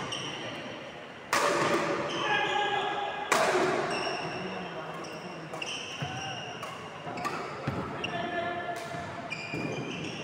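Badminton doubles rally on a wooden indoor court: rackets hit the shuttlecock with sharp smacks, the two loudest about a second and three seconds in, then lighter hits. Shoes squeak repeatedly on the court floor between shots, echoing in the hall.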